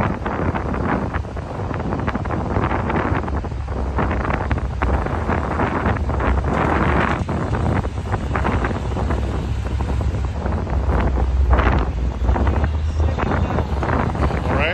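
Wind buffeting the microphone: a loud, uneven rumble that swells and fades in gusts.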